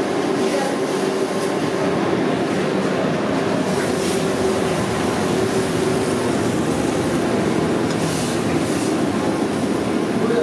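Steady loud rumble of a restaurant kitchen's wok station over a high gas flame, with a few brief clatters about four seconds in and again near the end.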